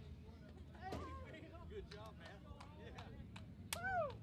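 Several people talking and calling out at a distance from the microphone, with one louder shout just before the end, over a low steady hum.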